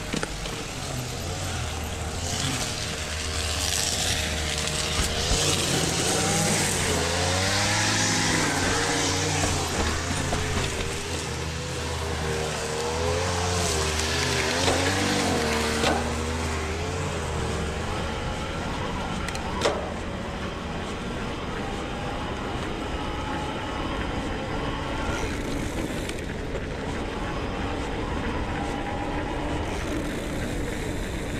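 Mountain bike riding downhill onto an asphalt road: continuous tyre and wind noise. From about two seconds in until about sixteen seconds there is also a wavering, pitched sound over a low hum, and there is a single sharp click about two-thirds of the way through.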